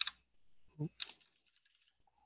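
Typing on a computer keyboard: a quick run of light keystrokes, mostly in the second half.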